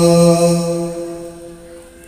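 A man's voice holding one long chanted note through a microphone and PA, at a steady pitch, dying away about a second and a half in.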